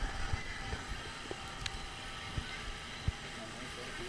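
Faint, steady background noise of an open-air ground, with a few soft scattered clicks and taps.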